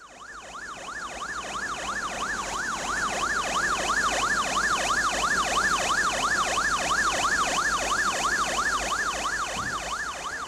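Electronic emergency-vehicle siren on a fast yelp, its pitch sweeping up and down about four times a second. It fades in over the first few seconds.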